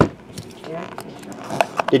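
A cardboard trading-card box knocks down onto a tabletop right at the start, followed by a few light clicks from hands handling it.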